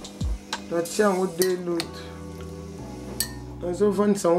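A metal spoon clinking against a glass bowl several times as meat is stirred in water, over background music with a singing voice.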